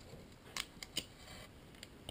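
A few faint, light clicks and taps as a laptop LCD panel is handled and lifted by hand, the sharpest ones about half a second and a second in.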